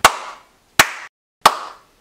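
Three sharp hand claps about two-thirds of a second apart, each trailing a short echo.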